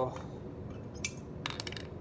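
Glassware clinking lightly as it is handled: a sharp clink about a second in, then a quick cluster of clinks around a second and a half, over a low steady room hum.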